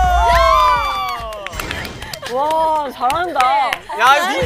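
A small group of people shouting and cheering in excitement: several overlapping long falling "oh!" cries at the start, then a brief lull and more shouted exclamations.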